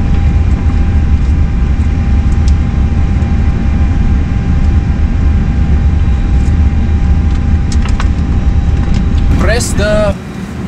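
Steady, loud low rumble of air-handling and equipment-cooling noise in a powered airliner cockpit, with a thin steady hum over it and a few light clicks near the end.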